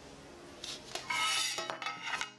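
Metal base of a springform cake pan being picked up, turned over and set down on a table: a scrape and metallic rattle with a brief ring starting about half a second in, then a few light clicks near the end.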